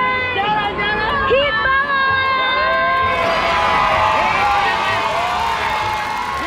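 A voice singing drawn-out, held notes over a crowd in a wave pool. About halfway through, a broad rush of water and crowd noise swells in under it.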